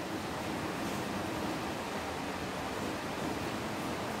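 Kitchen tap running steadily into a stainless steel pot of water in a sink, with hands rinsing under the stream at first.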